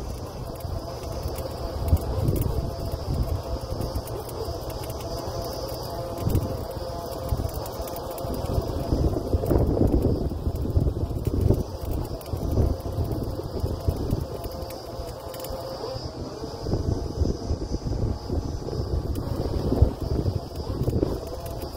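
Truck-mounted borewell drilling rig running with a steady low rumble, broken by irregular gusts of wind buffeting the microphone.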